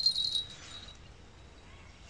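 A brief high-pitched ring, like a small bell, fading out within about half a second; then only faint outdoor background.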